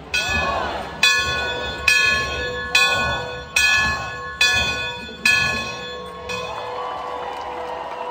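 A brass hand bell struck about seven times, roughly once a second, each stroke ringing out with a clear, fading tone. The last stroke is left to ring on. The bell is rung for a touchdown.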